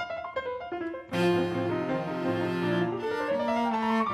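Cello and grand piano playing classical chamber music: a few sparse, quieter notes, then a full sustained chord about a second in, with the line climbing in pitch near the end.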